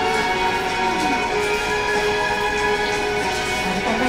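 Background music: a held chord of several steady tones, with a low note sliding down about a second in.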